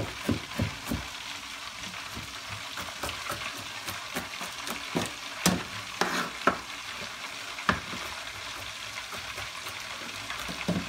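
Chicken wings frying in hot oil, a steady sizzle, under the irregular knocks of a kitchen knife chopping garlic on a cutting board, a quick run of chops in the first second, then scattered single strikes, the loudest about five and a half seconds in.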